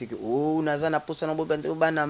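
A man singing into a handheld microphone without words, on drawn-out "a" vowels in long held notes.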